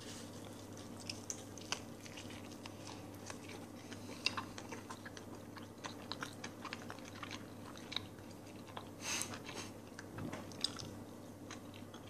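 A man chewing a mouthful of pizza sandwich, quiet and irregular with small crackling clicks, a little louder around nine seconds in. A steady low hum sits underneath.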